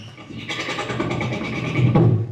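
Human beatboxing: a fast, even, rattling buzz from the mouth, with a low bass hit near the end.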